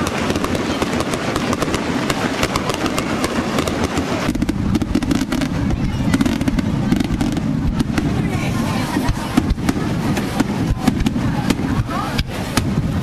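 Aerial fireworks bursting one after another: a rapid run of bangs and crackles, with crowd voices beneath.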